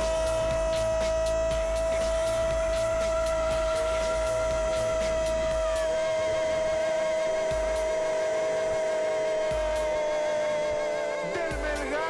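A football commentator's long, drawn-out goal cry ('goool') in Spanish, one held note at a steady pitch for about eleven seconds that sags slightly and breaks off near the end.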